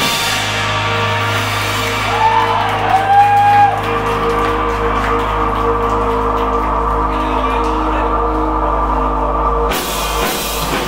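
Live rock band letting guitar and bass notes ring out steadily with no drums, a voice calling out briefly a couple of seconds in; the drums and full band come back in sharply near the end.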